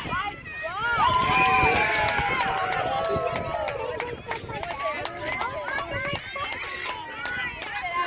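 Sideline spectators' voices talking and calling out close to the microphone, loudest a second or two in, with a few short clicks scattered through.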